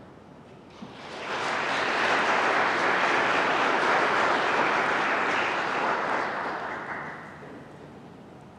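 Audience applauding, swelling about a second in, holding steady, then dying away near the end.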